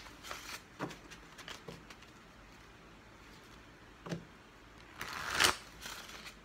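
Tarot cards being shuffled by hand: a few soft card flicks in the first two seconds, a quiet stretch, then a louder burst of shuffling about five seconds in.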